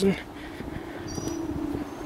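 A man's voice trailing off after the word 'and' into a long, low, steady hum held on one pitch.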